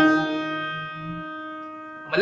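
Electronic keyboard: a note or chord struck and left to ring, fading away over about two seconds.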